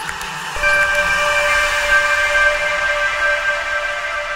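Ambient music: a held synthesizer chord of several steady tones over a soft hiss comes in about half a second in and sustains.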